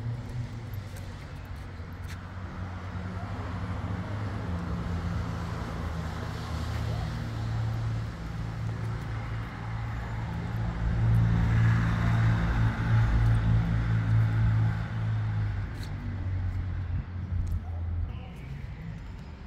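A motor vehicle's engine running in the street, a steady low hum that grows louder to a peak about two-thirds of the way through, then eases off.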